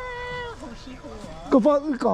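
People's voices: a short, high, drawn-out vocal sound right at the start, then loud, lively talking from about a second and a half in.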